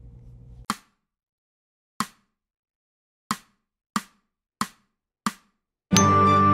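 Metronome click count-in: two slow clicks, then four clicks twice as fast. Right after them, near the end, bells and music come in loudly.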